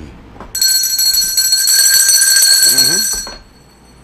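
A steady, high electronic beep tone starting about half a second in and holding for nearly three seconds before cutting off, with a man's voice faintly beneath it near its end.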